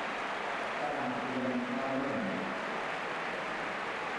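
Steady noise of a large stadium crowd, with no single voice standing out.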